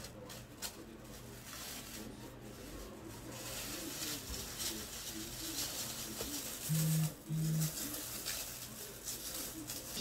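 Disposable plastic glove rustling and crinkling as it is pulled onto the hands, fairly quiet. A little past the middle, two short low buzzes in quick succession: a mobile phone vibrating.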